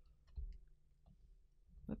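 Faint computer mouse clicks with a soft knock about half a second in, over low room noise; a voice begins near the end.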